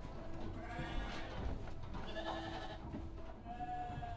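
Sheep bleating in a barn: two long wavering bleats, about half a second in and again about two seconds in, then a shorter one near the end.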